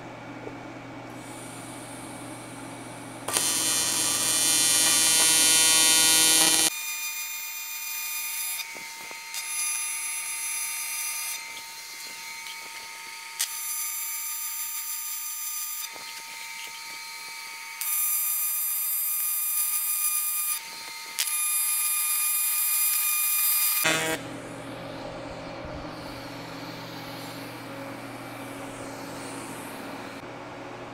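AC TIG welding arc on a cast aluminum V-band flange: a loud electric buzz with many overtones, set at about 165 Hz AC frequency on a Primeweld machine. It starts about three seconds in, swells and drops in several steps as the foot pedal is worked, and stops about 24 seconds in, leaving a steady background hum.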